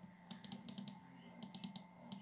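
Computer keyboard keys pressed in quick, light runs of clicks: a cluster of about six in the first second and a shorter run of about four near the end.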